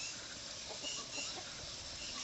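Faint clucking of chickens over quiet outdoor background noise.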